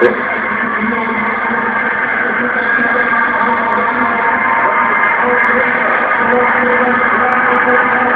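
Indoor arena crowd cheering steadily through the closing lap of a 400 m race, the noise growing slightly louder.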